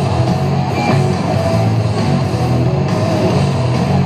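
Loud rock music with electric guitar, played steadily over an ice arena's sound system.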